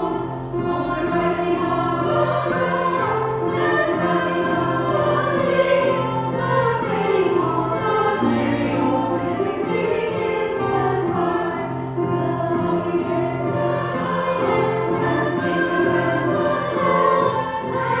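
Small choir of women singing a Christmas carol with grand piano accompaniment, continuous and steady throughout.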